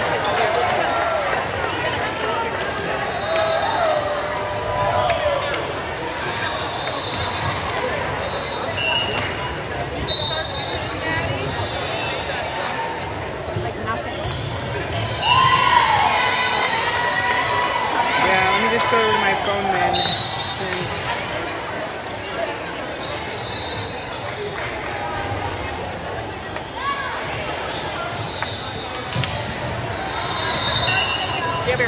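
Busy gymnasium ambience: echoing chatter from players and spectators, with balls thudding on the hardwood floor now and then and short high sneaker squeaks on the court.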